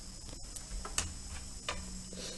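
A few light clicks of a stylus tip touching a pen tablet while writing, the sharpest about halfway through, over a faint steady hum.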